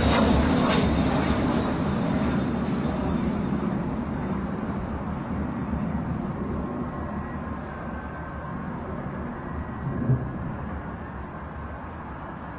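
Low, steady rumble of a flying aircraft's engine, slowly fading away. About ten seconds in comes a single dull thump of a distant explosion.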